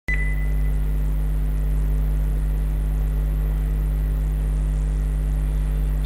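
Steady low hum with no words or other events. There is a short high beep at the very start that fades within about half a second.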